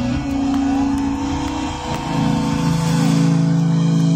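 Live rock band's amplified guitars and bass holding a long, loud sustained chord as a song closes.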